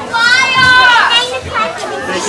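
A crowd of children shouting and chattering, with one child's long high-pitched shout that rises and falls for about a second near the start.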